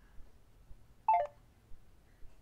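Short descending electronic beep from an Android phone's voice-assistant app about a second in, right after a spoken command, stepping down over about a quarter second.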